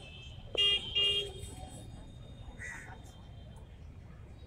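A vehicle horn honks twice in quick succession, two short beeps about half a second in, over steady outdoor background noise.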